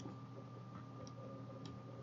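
A few faint computer mouse clicks.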